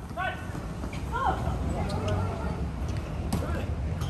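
Open-air small-sided football game: two brief shouts from players on the pitch, one at the start and one about a second in, over a steady low rumble, with a single sharp knock a little after three seconds.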